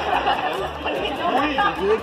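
Indistinct chatter of several people talking over one another in a room, with no single voice standing out until one voice comes through clearly near the end.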